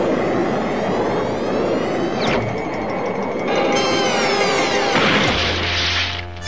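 Cartoon sound effects of a jet plane diving out of the sky: a rushing engine noise with falling whistles, then a crash about five seconds in as it comes down, with a low hum after. Background music runs under it.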